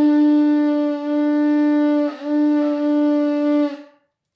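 Conch shell trumpet blown in one long steady note. The note dips briefly in pitch and loudness about two seconds in, then holds again and stops just before the end.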